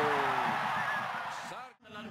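A male football commentator's drawn-out call trailing off and falling in pitch, over stadium crowd cheering that fades away. Near the end the sound drops out briefly to near silence, an edit cut.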